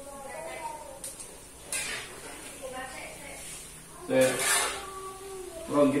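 Peyek (battered peanut crackers) frying in hot oil in a wok, a steady sizzle, with a short burst of voice about four seconds in.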